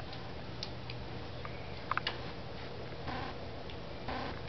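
Border collie puppies' claws clicking on a tile floor: a few light, irregular ticks, a small cluster about two seconds in, over a steady low hum.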